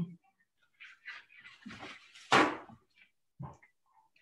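Scattered brief kitchen handling noises, with one louder short knock or clatter a little over two seconds in.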